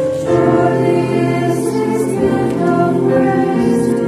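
A Salvation Army songster brigade, a mixed choir of men's and women's voices, singing a sacred song in sustained chords. The chords change every second or two, with brief sung consonants between them.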